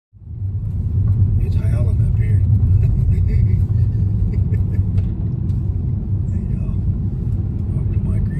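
Car driving, heard from inside the cabin: a steady low rumble of engine and tyre noise that fades in over the first second.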